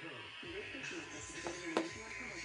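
Quiet talking with soft electric guitar notes underneath, and two sharp clicks about three-quarters of the way through.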